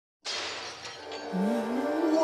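A sudden crash like breaking glass over a sustained dramatic music chord, then in the second half a voice rising slowly in an "ooh".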